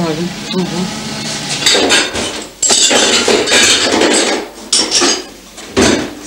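Dishes and cutlery clattering and clinking as they are handled at a kitchen counter, a busy run of clinks and knocks starting about two seconds in.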